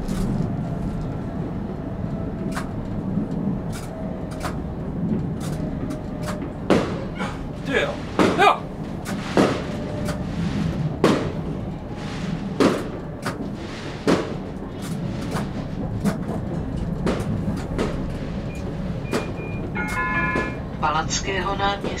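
A tram running steadily, with irregular sharp bangs of New Year's fireworks going off outside, several of them loud and echoing. Near the end a short chime sounds, and the tram's automated stop announcement begins.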